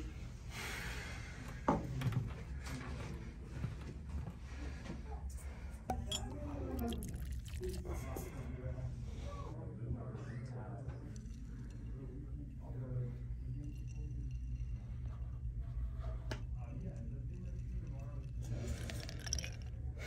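A sharp glass clink about two seconds in and whiskey being poured into a glass, over a steady low room hum. Indistinct voices murmur around the middle.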